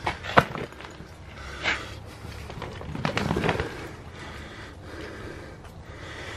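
A disc golf bag handled close to the microphone: a sharp knock about half a second in, then a few softer bumps and rustles over a steady low background noise.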